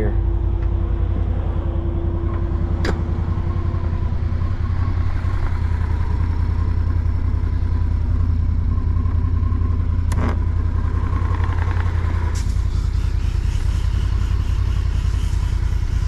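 Side-by-side UTV engine running at a steady low drone while its boom sprayer sprays a patch of trail, a thin steady whine from the sprayer pump running over it and stopping about three-quarters of the way through. Two sharp clicks, one early and one later.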